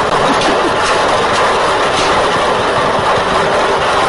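Lottery draw machine mixing its numbered balls: a steady rush with the balls clattering against one another and the chamber walls, continuous throughout.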